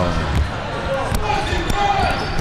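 A basketball bouncing on an indoor court during play: a few sharp bounces scattered through the moment, over background voices of players.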